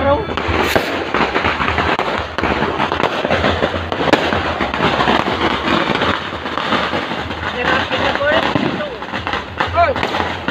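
Firecrackers and fireworks going off in a dense, continuous crackle of rapid pops, with voices calling out over them.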